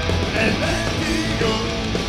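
Punk rock band playing live, with electric guitar and drums, loud and steady.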